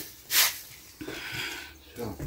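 A stiff-bristled broom sweeping across wooden boards: one short, scratchy swish about half a second in.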